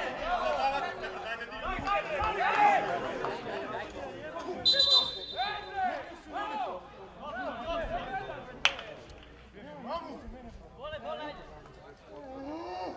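Men's voices calling and talking across an open football pitch, several at once and loudest in the first few seconds. A brief high steady tone sounds about five seconds in, and a single sharp click comes shortly before the nine-second mark.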